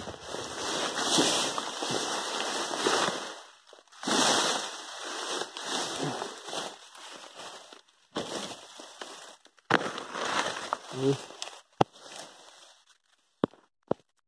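Leaves and grass stems rustling and crackling against the phone as it is pushed through dense weeds, in several bursts of a few seconds each, with a few sharp clicks in the last few seconds.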